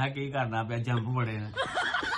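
A man's voice speaking or vocalizing in long, drawn-out, level-pitched tones, followed by a short breathy, noisy sound near the end.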